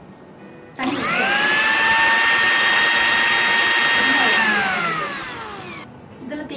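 Panasonic mixer grinder switched on about a second in, its motor whine rising quickly to a steady high pitch as it grinds mint leaves into a paste, then switched off and winding down with a falling whine before stopping near the end.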